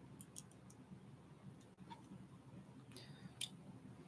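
Faint clicks of plastic model-kit parts being handled and pressed together, over near silence. One slightly sharper click comes a little before the end.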